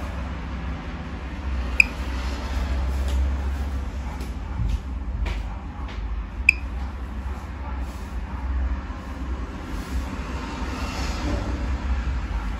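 Geiger counter ticking sparsely as it counts a rose quartz block held against it: two sharp, high, beep-like ticks several seconds apart, a low count rate. A steady low rumble runs underneath.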